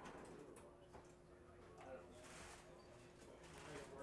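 Near silence: room tone with a faint steady hum and faint soft rustling of braided fishing line being worked by hand.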